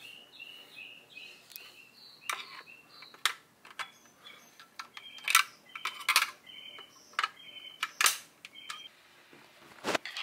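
HEI distributor cap being unlatched and lifted off: a string of sharp plastic clicks and knocks, the loudest about midway and near the end.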